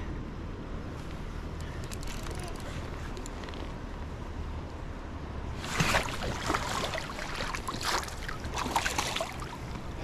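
Steady rush of a shallow river. From about six seconds in come irregular splashes at the water's surface as a hooked rainbow trout is brought to the landing net.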